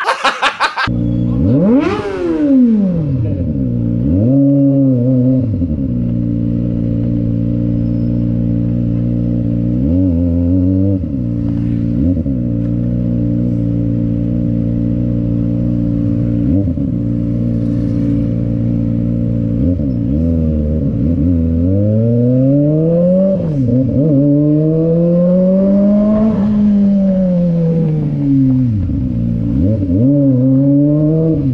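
Kawasaki Ninja sport bike engine idling, with repeated short throttle blips and a longer rev that climbs and falls back near the end. A fast run of clicks comes in the first second.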